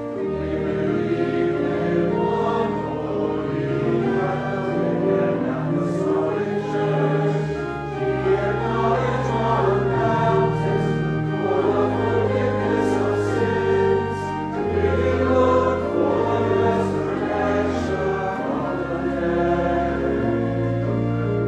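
Choir singing sacred music with organ accompaniment, sustained low notes moving in steps beneath the voices.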